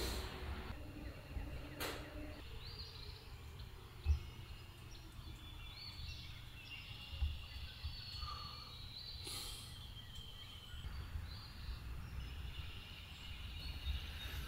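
Faint outdoor ambience with birds calling now and then, and a dull thump about four seconds in.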